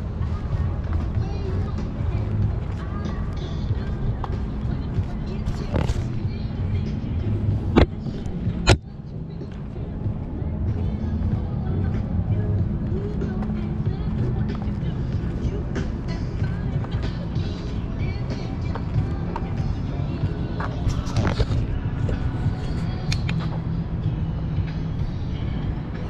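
Steady low rumble of small wheels rolling over a concrete pier deck, mixed with wind on the microphone. A few sharp knocks come about six and eight to nine seconds in.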